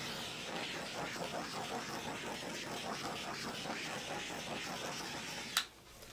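Small handheld gas torch running with a steady hiss as it is played over wet acrylic paint to raise cells; the hiss stops with a sharp click near the end.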